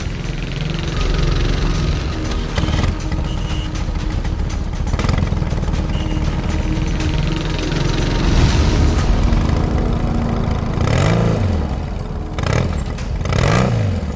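Motorcycle and auto-rickshaw engines running in street traffic under tense background music, with two engines revving up and easing off near the end.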